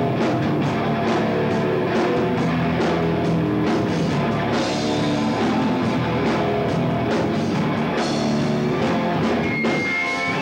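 Heavy metal band playing live: distorted electric guitars holding sustained notes over a steady drum-kit beat.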